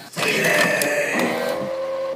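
Epson Artisan 730 inkjet printer mechanism sounds standing in for the song's instruments: a whirring motor whine with a few sharp clicks, joined by a lower pitched hum in the second half. The sound starts abruptly.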